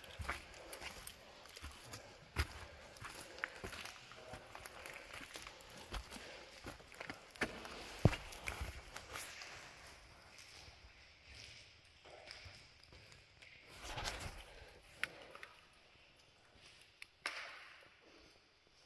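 Footsteps crunching and scuffing over loose stone rubble, with scattered clicks and knocks of stones underfoot, a sharp one about eight seconds in. The steps are busier in the first half and grow sparse and quieter after about ten seconds.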